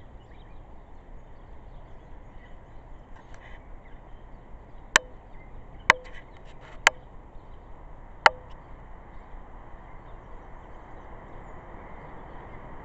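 Four sharp clicks a little past the middle, the first three about a second apart, over a steady low background hiss.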